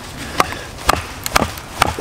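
Four sharp strikes, about two a second, of a hatchet on the spine of a Schrade SCHF37 survival knife, driving the blade through a thick log of hard resinous wood to split it (batoning).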